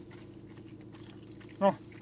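A pause in a car cabin with a faint, steady low hum and a few light clicks. A man says a single short word near the end.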